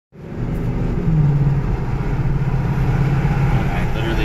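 Engine and road noise heard inside the cabin of a 2017 Ford Mustang cruising at steady speed: a steady low drone, a little louder from about a second in.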